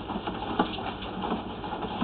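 Drain inspection camera push rod being fed by hand into a drain pipe: faint irregular clicks and scraping over a low rumble.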